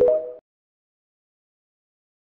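Tail of the TikTok end-card jingle: a few short electronic tones stepping up in pitch, cutting off suddenly about half a second in. The rest is digital silence.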